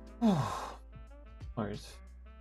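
A man's audible sigh about a quarter of a second in, a breathy exhale with his voice falling in pitch, then a second, shorter breath near the end. Soft background music with guitar plays underneath.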